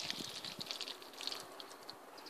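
Faint, irregular wet squelching and crackling as a rubber-gloved hand squeezes a heap of rotted, blended banana skins, pressing juice out of them.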